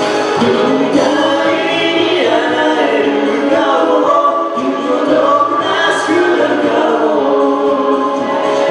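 Two singers performing a Japanese duet into microphones over a karaoke backing track, their voices amplified through PA speakers; the singing runs continuously.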